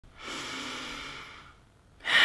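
A woman's audible breath, lasting a little over a second and fading out.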